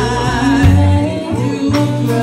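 A woman singing held, wavering notes into a microphone over a live blues band, with electric guitar and bass guitar.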